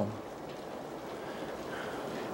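Heavy rain falling steadily: an even hiss.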